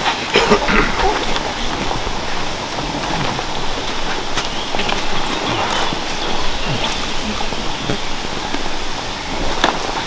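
Steady hissing outdoor noise, with faint voices in the first second and a few light knocks.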